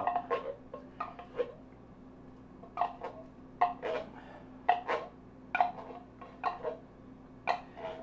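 A can of condensed cream of mushroom soup being handled over a plastic slow-cooker liner to get the stiff soup out. About a dozen short, irregular knocks and crinkles, a few seconds apart, with a faint steady hum underneath.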